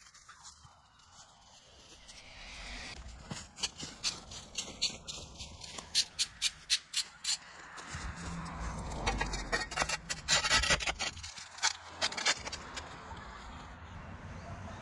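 Mulch and soil being scraped and worked with a garden tool: a run of quick, sharp scrapes and crunches, with a heavier low rumble about eight seconds in as more mulch is moved.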